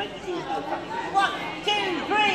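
Overlapping chatter of several voices, children's among them, with no single clear speaker.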